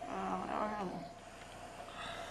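A faint, brief vocal sound about a second long, its pitch wavering and then dropping at the end.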